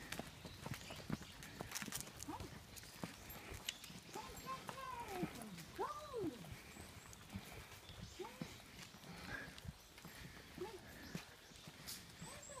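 Footsteps on a concrete path, a faint run of irregular short clicks and scuffs, with a few brief voice sounds between about four and eleven seconds in.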